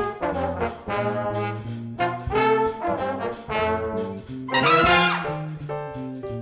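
A jazz big band playing an instrumental swing passage, with the trumpets and trombones out in front in short punchy ensemble chords over bass and drums. The loudest, brightest brass chord comes about four and a half seconds in.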